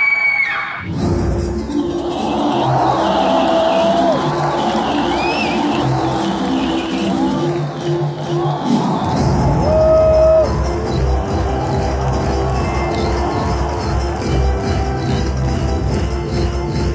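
Music for a dance troupe's routine played loud through an outdoor stage sound system, over the noise of a large crowd. The music starts about a second in, and a heavy low beat joins about nine seconds in.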